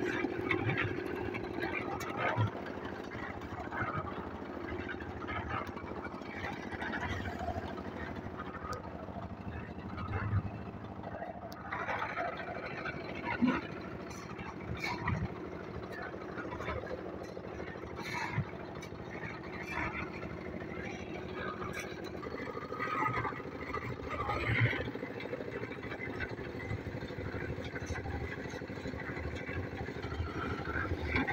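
Small stationary engine driving a drum concrete mixer, running steadily with an even hum throughout, with a few knocks and indistinct voices over it.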